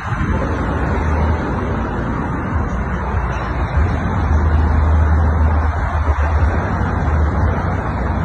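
Steady road traffic noise with a deep, uneven rumble.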